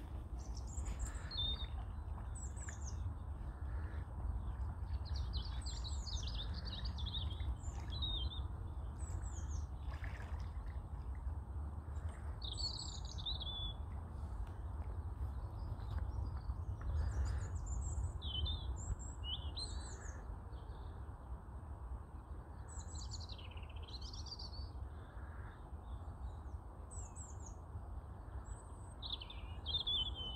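Small birds chirping and singing in short, scattered phrases over a steady low rumble.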